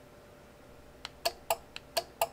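Buttons on a Flipper Zero's directional pad being pressed: about four quick, sharp clicks roughly a quarter second apart, starting about a second in.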